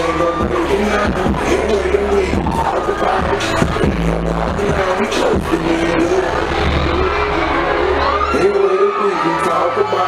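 Hip-hop track played loud through a club sound system, with heavy bass, rapping and crowd voices over it; the bass drops out near the end.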